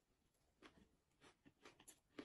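Very quiet close-up chewing: faint soft clicks and crackles from a mouth eating, about five of them in the last second and a half, over near silence.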